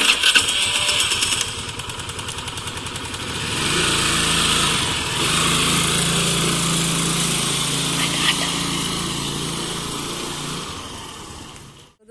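A small petrol scooter engine starting and then running: a sudden loud start, a brief even putter, then a louder steady run from about three and a half seconds in as it pulls away, fading near the end.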